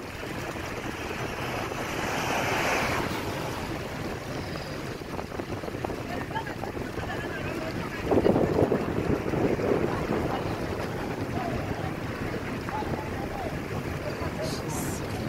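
Wind buffeting a phone microphone outdoors, a steady rushing noise that swells about two to three seconds in and again, louder, around eight to ten seconds in.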